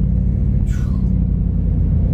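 Steady low rumble of a car's engine and road noise heard inside the cabin while driving, with a brief falling hiss under a second in.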